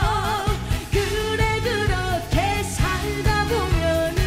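A woman singing a Korean trot song live, with wide vibrato on the held notes, over a backing track with a steady beat.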